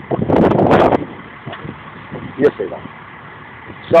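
Steady hum of an idling vehicle engine, with a loud rush of noise through about the first second.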